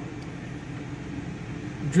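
Steady low mechanical hum with a faint even hiss, unbroken through the pause.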